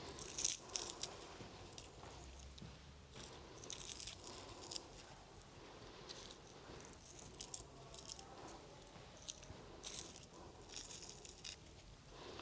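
Faint, dry crackling of dried herb petals being crumbled between the fingers, coming in a few short bursts.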